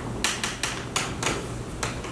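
Thin Bible pages being turned: a quick run of crisp paper flicks and rustles, about six in two seconds.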